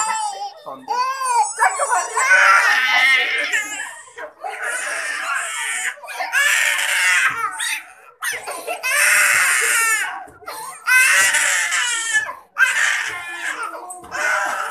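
Toddler crying in a run of wailing sobs, each a second or so long, with short breaths between them.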